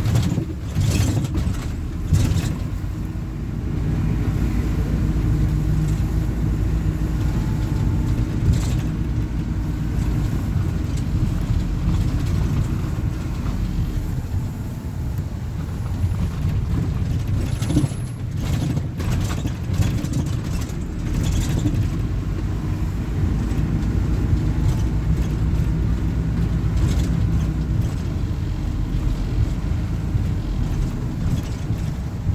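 Heard from inside the cabin, a Plaxton Beaver 2 minibus's diesel engine drones steadily as it drives along, its pitch rising and falling with speed. A few sharp knocks from the bodywork come through at intervals.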